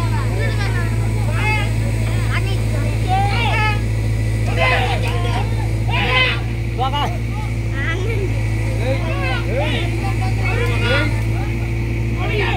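A JCB backhoe loader's diesel engine running steadily with a low hum, while several people call out over it.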